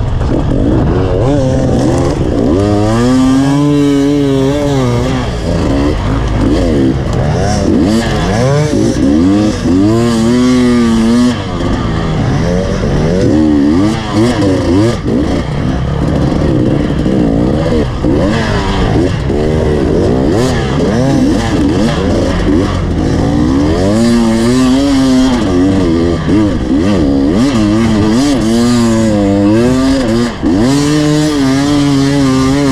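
Enduro dirt bike engine heard on board, its revs rising and falling over and over as the rider works the throttle and gears on a dirt track, over a steady rush of wind and ground noise.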